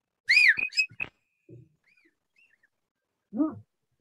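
A man whistling an imitation of the common hawk-cuckoo's (papiha, the brain-fever bird) call. It opens with one loud note that rises and falls, followed by a few quick short notes, with fainter notes about two seconds in.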